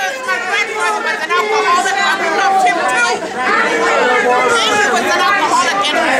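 Several people talking over one another at once: loud, overlapping voices with no single speaker standing out.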